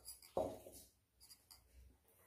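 Faint scraping of a metal spoon against a steel vessel as thick rice-and-jaggery batter is stirred, with a single knock about half a second in.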